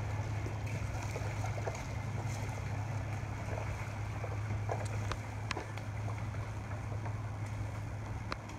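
Water washing and splashing as stand-up paddles stroke through a canal, over a steady low drone, with a few faint ticks from the paddles and boards.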